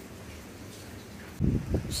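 Faint steady outdoor background noise, then, about a second and a half in, a sudden loud low rumbling buffeting on the microphone.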